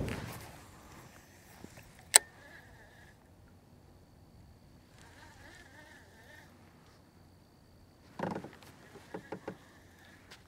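Baitcasting rod and reel being worked from a kayak: a single sharp click about two seconds in, a faint reel whir, and a short run of clicks and knocks near the end.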